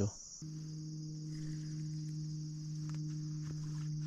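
Insects trilling in a steady, continuous high chorus, joined about half a second in by a steady low hum. A few faint ticks.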